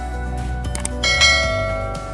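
Background music with a notification-bell chime sound effect: a couple of short clicks, then a bright bell ding about a second in that rings on and fades.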